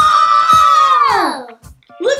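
A child's long, high, held exclamation, a drawn-out "ooooh", that slides down in pitch and fades out about a second and a half in.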